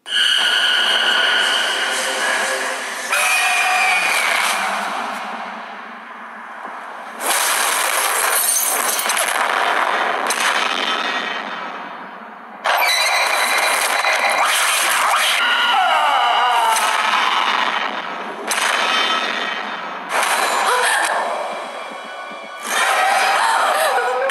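Horror film trailer soundtrack: music and sound effects built on a series of sudden loud hits, about seven, each dying away over a few seconds, with no deep bass.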